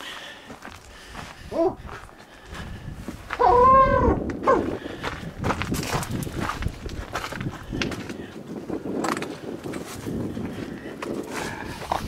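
Footsteps and rustling on dry ground and brush, with one short, high, arching call about three and a half seconds in.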